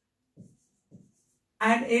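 Two faint, short strokes of writing on a green board about half a second apart, as the word "an" is written in; speech starts near the end.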